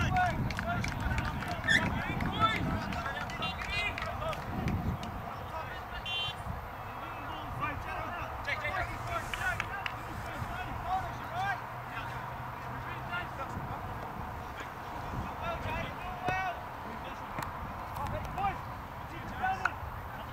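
Indistinct, overlapping voices of players and spectators calling out across an open rugby league field, with no clear words, over a low outdoor rumble.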